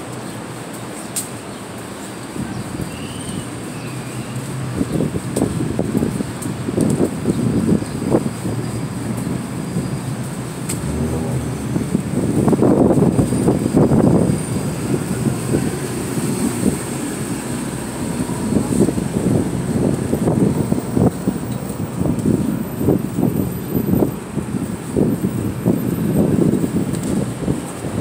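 Uneven low rumbling noise that grows louder from about four seconds in and surges around the middle, with a steady high whine throughout.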